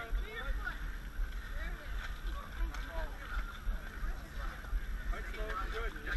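Faint, scattered voices of several people talking and calling out, over a steady low rumble.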